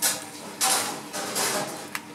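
Scraping and rubbing as a raw dab is filleted on a plastic cutting board, in three short bursts.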